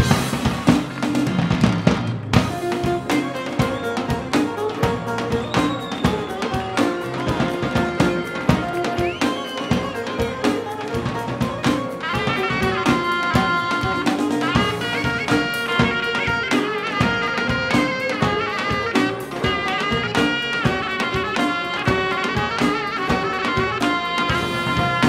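Live band music amplified through a stage PA, with a drum kit keeping a steady beat under a pitched melody line. The melody grows fuller about halfway through.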